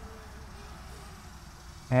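Faint, steady hum of a DJI Mavic Mini quadcopter hovering some way off, with a low rumble underneath.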